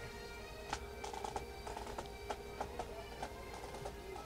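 A Highland pipe band playing faintly: a held pipe tone with scattered drum strokes.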